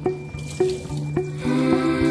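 Kitchen tap running onto a sponge and a ceramic bowl being rinsed and scrubbed in a stainless steel sink. A song with a steady beat plays over it and is at least as loud as the water.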